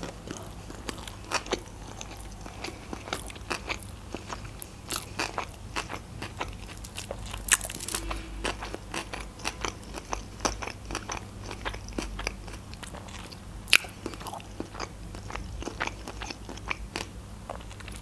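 Sushi rolls being chewed close to the microphone: a steady run of small wet mouth clicks, with a few louder clicks along the way.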